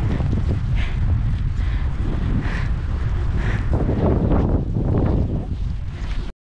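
Wind buffeting the microphone with a loud, gusty low rumble, over footsteps crunching in wet snow about once a second.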